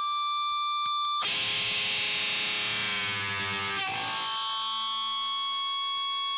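Electric guitar feedback through a distorted amplifier. A steady high whine swells in, then about a second in it breaks into harsh distorted noise with several held pitches. Near the four-second mark it settles back into a steady feedback whine.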